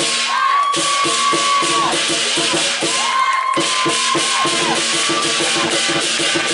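Lion dance percussion: a large drum and hand cymbals playing a fast, steady beat, with two brief breaks in the drumming. A held higher tone sounds twice over it.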